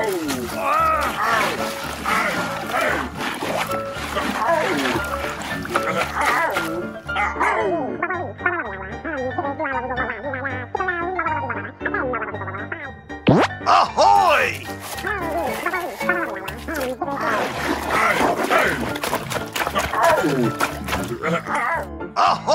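Background music with a repeating beat, overlaid with wordless, cartoonish vocal noises and a fast rising sweep effect about 13 seconds in.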